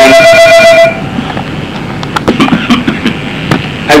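A loud, steady held tone for about a second, then a quiet pause with faint clicks, and a man's cough right at the end.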